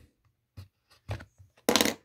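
Sealed clear plastic tube of a 2008 Topps Finest card pack being pried open by hand: a few small plastic clicks, then a louder short crackle near the end.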